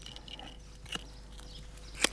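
Pocketknife paring a thin bull-horn sliver for a pipe reed: a few faint short scrapes and clicks of blade on horn, the clearest about a second in.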